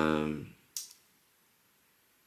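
A man's drawn-out hesitation 'uh' for about half a second, then a single short, sharp click just under a second in, followed by a still room.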